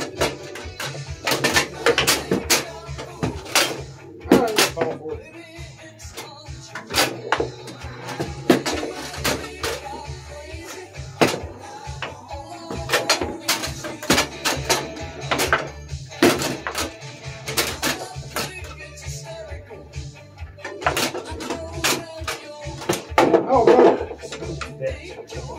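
Foosball table in play: irregular sharp cracks and knocks as the ball is struck by the figures and hits the table walls and the rods are worked, with background music playing throughout.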